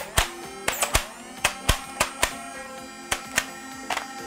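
Background music with steady tones, over a string of irregular sharp plastic clicks from the XS HK416D flywheel foam dart blaster being handled and worked near its magazine.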